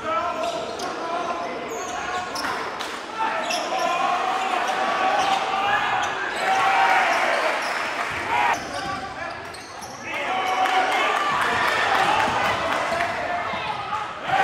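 Live basketball game sound in a gym: indistinct shouts and chatter from players and spectators, with a basketball bouncing on the hardwood floor.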